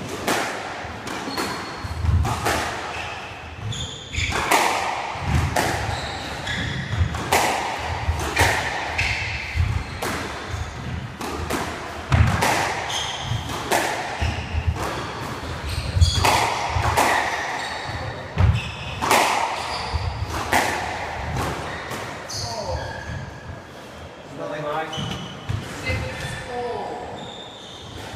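Squash rally: the ball cracking off rackets and the court walls about once a second, with short shoe squeaks on the wooden court floor between the hits.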